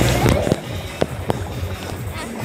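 Party sound of dance music and voices that drops away about half a second in, leaving quieter chatter and two sharp clicks.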